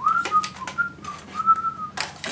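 A person whistling a short wandering tune of several notes, opening with a rising note, while light clicks and knocks of plastic parts and cable being handled come through.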